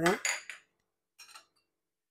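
A few light metallic clinks of kitchenware against a metal kadai during dry-roasting of spices, with a short high ring, then a single fainter clink about a second later.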